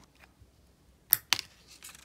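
Two sharp metallic clicks about a quarter second apart, the first louder: steel tweezers levering the old button-cell battery out of a Ronda quartz watch movement as it snaps free of its holder.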